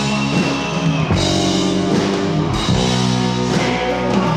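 A live rock band playing loud through a concert PA: guitar chords over a drum kit, the chords changing every second or so.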